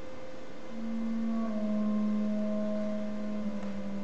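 Quiet contemporary chamber music for clarinet, violin and harp: a soft, pure low note enters under a faint high held tone about a second in and is sustained, dipping slightly in pitch, with a fainter higher note held above it for a couple of seconds.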